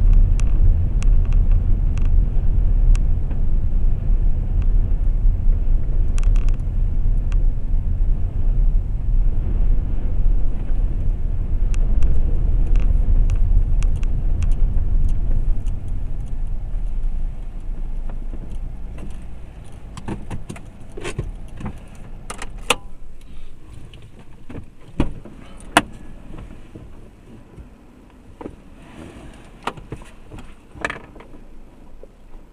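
Car heard from inside the cabin: a steady low rumble of engine and tyres while driving, which dies away after about fifteen seconds as the car slows to a stop. Then the car stands idling quietly, with a few scattered clicks and knocks.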